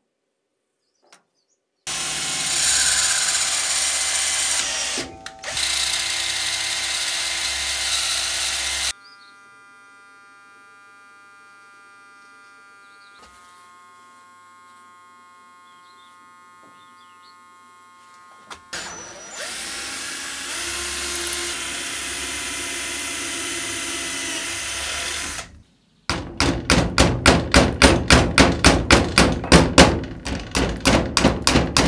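Electric drill running in two long bursts, with a quieter steady hum between them. Near the end it pulses about five times a second as the bit works into the sword's wood-and-brass handle.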